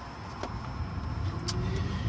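Low rumble of a car's cabin while the car runs, growing slightly louder across the two seconds, with a couple of faint clicks.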